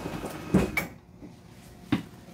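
Hydraulic slide-out of a fifth-wheel RV retracting: a steady mechanical hum runs, a couple of knocks sound as the room comes in, and the hum stops about a second in. A single sharp clunk follows near the end.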